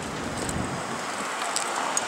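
Steady rush of wind over the microphone with street noise while riding a bicycle.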